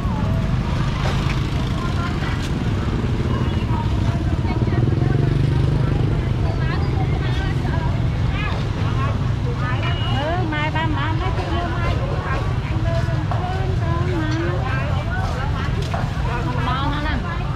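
Busy street-market ambience: people talking in the background and motorbikes running, over a steady low rumble.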